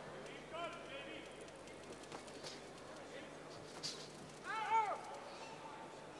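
Boxing arena crowd murmuring, with light knocks and scuffs from the ring. A short pitched call rises out of the crowd just before one second in, and a louder, high-pitched shout with a rise and fall comes about three-quarters of the way through.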